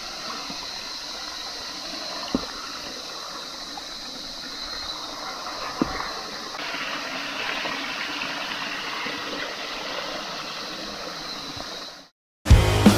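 Creek water running steadily over rocks and between rock pools, flowing after recent rain. Two brief soft knocks come a few seconds apart, and the rush grows a little fuller about halfway through.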